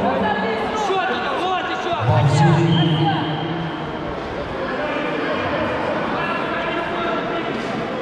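Several voices shouting over one another in a large gym hall, coaches and spectators calling out to the fighters during a bout.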